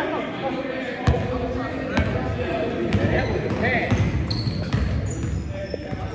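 A basketball bouncing on a hardwood gym floor, with sharp bounces about once a second echoing in a large hall, under players' voices.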